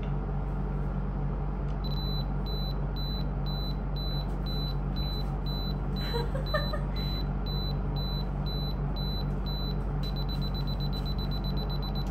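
Camera self-timer counting down: a short high beep about twice a second, starting about two seconds in, which speeds up to a rapid beeping for the last two seconds before the shot. A steady low hum runs underneath.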